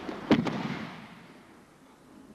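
Judoka thrown down onto tatami mats: a single loud slap of the body and breakfall about a third of a second in. It rings on in the reverberant hall and fades over about a second.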